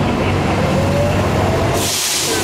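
A heavy vehicle running close by on a city street: a steady low rumble with a faint, slowly rising whine, then a short loud hiss near the end.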